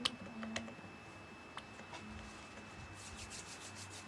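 Hands rubbing together close to a phone's microphone: a few faint clicks, then a quick run of faint scratchy rubbing strokes in the last second.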